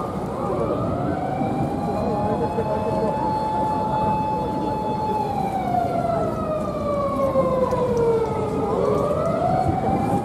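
A siren wailing slowly: one long rise, a held tone for several seconds, a slow fall, then rising again near the end.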